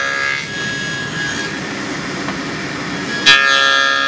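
SawStop table saw with a dado stack cutting half-inch finger-joint slots in a wooden box side on a sled jig. A whining cut dies away in the first half second, the blade runs steadily in between, and a loud new cut bites in sharply near the end.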